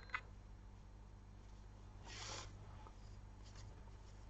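Quiet room with one faint, soft rustle about two seconds in: yarn drawn through knitted wool fabric as a seam is sewn by hand with a needle. A tiny click right at the start.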